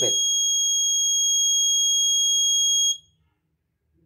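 Electronic alarm buzzer of an Arduino school-bell timer sounding the second scheduled bell: one steady, high-pitched continuous tone that cuts off suddenly about three seconds in.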